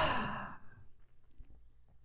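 A man sighs once, a breathy exhale that fades within about a second. Only a couple of faint soft bumps follow.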